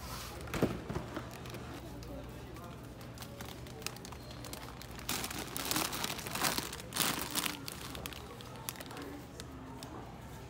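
Plastic snack and cereal bags crinkling as they are handled and shuffled around in a loaded shopping cart, in short bursts with a louder cluster about halfway through, over a steady low store hum.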